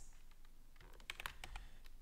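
A few faint keystrokes on a computer keyboard, bunched together about a second in.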